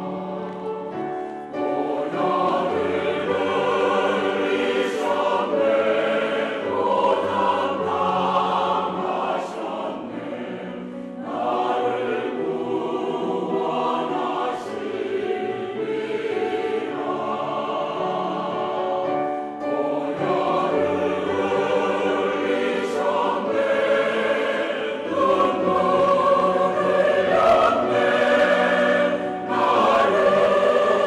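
Mixed church choir singing a sacred anthem in harmony, in long sustained phrases with short breaths between them, swelling louder near the end.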